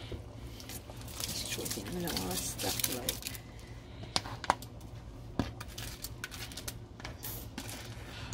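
A pot of rice and red peas in coconut milk bubbling on the stove, with irregular small pops and crackles. A faint voice murmurs in the background between about one and a half and three seconds in.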